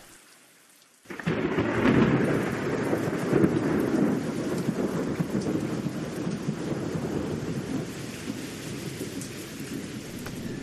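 A long roll of thunder over rain. It breaks in suddenly about a second in, after a brief hush, and slowly dies away.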